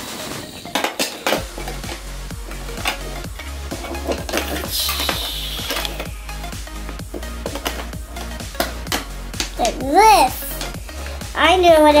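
Small pink plastic toy parts clicking and clattering as they are handled and fitted together, over background music with a steady beat. A child's voice comes in near the end.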